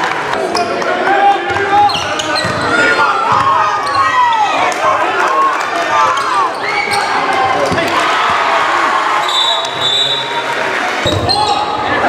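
Basketball game sound in a gym: sneakers squeaking on the hardwood court in short gliding chirps, the ball bouncing, and players' and spectators' voices echoing through the hall. A brief shrill steady tone sounds a couple of seconds before the end.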